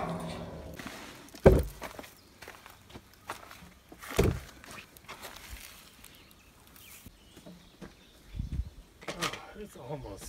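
Two heavy wooden thuds about three seconds apart, then a duller knock near the end, as a large timber rafter is handled and set down, with footsteps in between.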